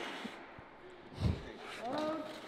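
A skateboard dropping back onto a concrete floor with one low thud about a second in, followed by a brief voice near the end.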